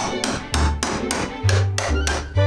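A hammer striking steel on a wooden sill in a quick, even run of sharp blows, about four a second, working loose a steel staple (kasugai) held with pliers. Background music plays underneath.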